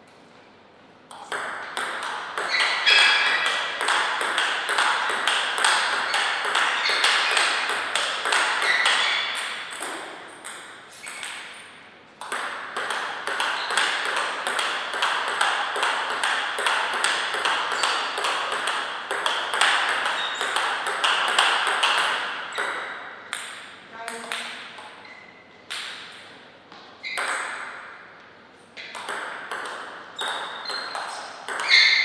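Table tennis ball being hit back and forth: rapid clicks of the celluloid-type ball off rubber paddles and the table top, in a continuous run with a short break in the middle. Near the end the clicks thin out to single hits and bounces.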